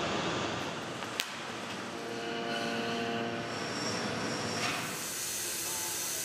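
Steady shipyard workshop noise with a machine hum through the middle, then, from about four and a half seconds in, the bright steady hiss of a gas cutting torch on a cutting machine slicing steel plate.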